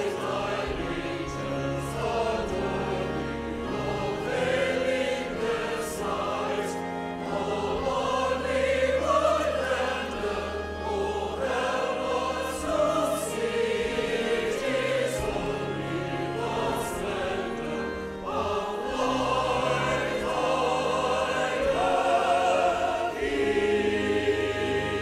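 Mixed church choir of men and women singing an anthem, many voices in parts over steady low sustained tones.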